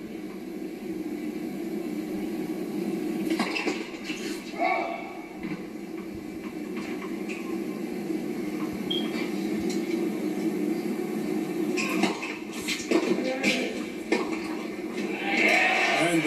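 Tennis match broadcast heard through a television speaker: a steady low crowd and arena hum, with a few short sharp knocks of racquet on ball during the point, among them the serve. Crowd noise rises near the end.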